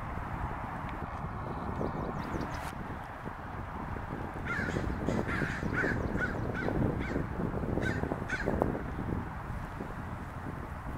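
American crows cawing: a run of short, separate caws, about two a second, starting about halfway through and lasting some four seconds.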